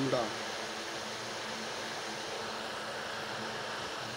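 A single spoken word at the start, then steady background hiss with a faint low hum that does not change.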